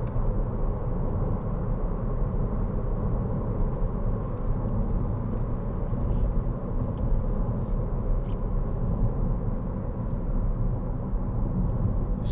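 Steady low rumble inside the cabin of a 2013 Audi Q3 2.0 TDI diesel being driven at speed: tyre, road and engine noise with no change in pace.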